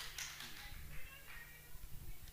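Quiet acoustic guitar handling: a few faint knocks and a softly ringing note over a steady low hum from the sound system.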